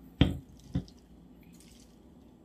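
A metal spoon scooping chia seeds from a small glass bowl, knocking against it twice about half a second apart. The first knock is the louder.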